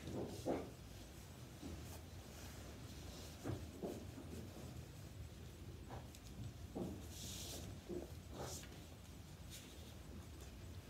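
Faint rustling and scuffing of nylon and leather harness straps being handled and threaded, a few soft sounds scattered through, with a brief hiss a little past the middle, over a steady low hum.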